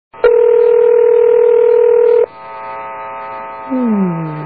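Telephone ringing tone heard down the line by the caller: one loud, steady, slightly warbling ring lasting about two seconds, followed by fainter steady tones and a low sound that falls in pitch near the end.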